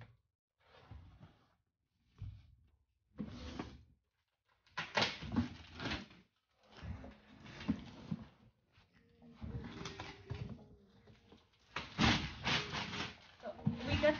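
A large cardboard box being handled and opened: irregular scraping, rustling and knocks of the cardboard flaps and box, in short bursts with brief pauses between them.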